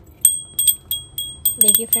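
Small hand-held puja bell (ghanti) rung repeatedly in worship: a quick run of about a dozen clear, high, ringing strikes that come faster near the end.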